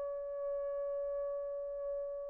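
Selmer Super Action 80 Series II baritone saxophone holding one long, steady high note that is clear and nearly pure in tone, easing off slightly near the end.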